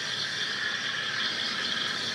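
Espresso machine steam wand hissing steadily in a stainless steel pitcher of cold milk, heating and frothing it.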